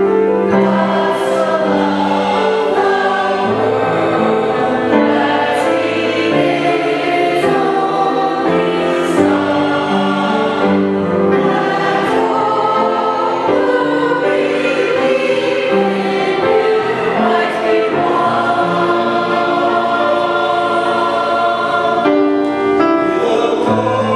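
Mixed-voice church choir of men and women singing an anthem in parts, with long held notes and sung words.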